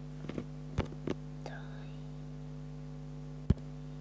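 Steady low electrical hum, with a few soft clicks and a faint whisper-like sound in the first second and a half. One sharp tap about three and a half seconds in is the loudest sound.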